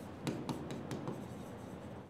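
Faint scratching of a pen on a writing board as a large circle is drawn and a word written, with several short sharp ticks of the tip.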